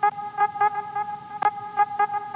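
A steady electronic-sounding tone with a buzzy edge, pulsing about five times a second.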